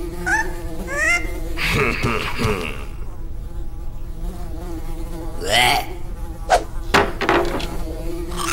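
Cartoon flies buzzing: a steady low wing drone, with short squeaky rising chirps near the start and a few quick swishes about two-thirds of the way through.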